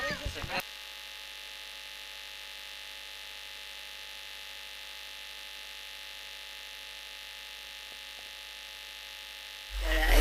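Steady electrical hum and buzz from the broadcast sound chain, a fixed mix of many even tones with nothing else over it, after a man's voice cuts off about half a second in. Near the end, a low rumble comes in as the sound returns.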